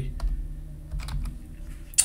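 Computer keyboard keys tapped a few times in quick succession, typing a short word, over a steady low hum.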